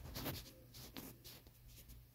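Faint scratchy rustling with scattered light ticks over a low steady hum.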